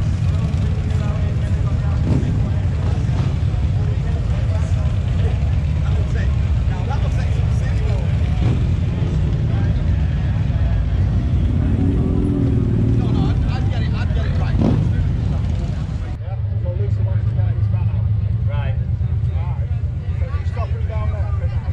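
Harley-Davidson motorcycles' V-twin engines running as bikes ride in, a steady low rumble, over the chatter of a crowd.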